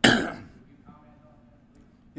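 A man clearing his throat once, sharply, close to a podium microphone, the sound dying away within about half a second.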